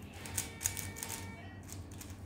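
Hand-held plastic puzzle cube being turned fast, its layers snapping round in a quick, irregular run of clicks.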